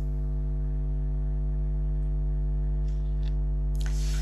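Steady electrical hum with a stack of evenly spaced overtones above a strong low fundamental, unchanged throughout. A short rustle of cloth near the microphone comes near the end.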